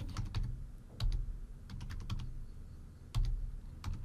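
Typing on a computer keyboard: irregular keystrokes in short runs, entering a phone number, over a low hum.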